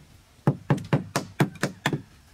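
A hammer striking a wood-handled chisel held upright in a wooden board. Seven quick, evenly spaced blows at about four to five a second begin about half a second in.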